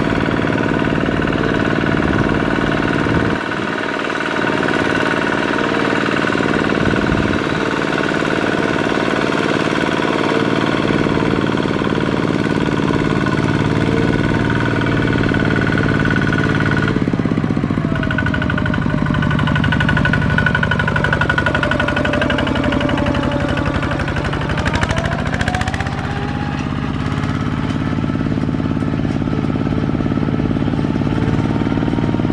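Single-cylinder diesel engine of a two-wheel walking tractor (power tiller) running hard as it hauls a loaded trailer through mud, with a rapid chugging beat. Past the middle the engine speed sags and then picks up again.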